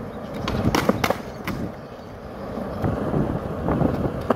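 Skateboard rolling on smooth concrete, its wheels giving a steady low rumble, with a few sharp clacks of the board in the first second and a half and a couple more near the end.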